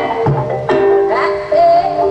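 Javanese gamelan music accompanying a dance: held ringing metallophone tones, irregular hand-drum strokes and a wavering high melody line.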